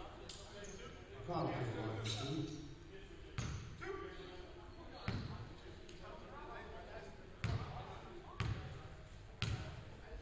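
A basketball bounced several times on a hardwood gym floor, each bounce echoing in the hall; the last three come about a second apart, like a shooter's dribbles before a free throw. Voices call out in the first few seconds.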